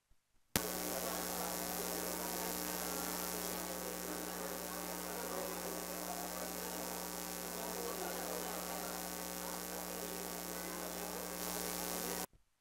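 Electrical mains hum and buzz through a PA loudspeaker system. It switches on suddenly about half a second in, holds steady, then cuts off abruptly: a fault in the sound system while the microphone is being set up.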